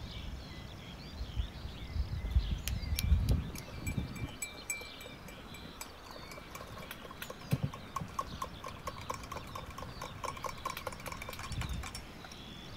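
A metal spoon stirring in a drinking glass, clinking against its sides in a quick, even run of light ringing ticks, densest in the second half.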